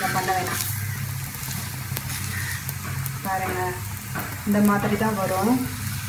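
Paratha sizzling faintly as it cooks on a hot iron tawa, with a steady low hum underneath and a couple of light clicks from a steel spatula in the first few seconds.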